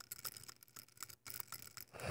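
Faint, scratchy clicking of plastic LEGO minifigures being handled and moved against each other.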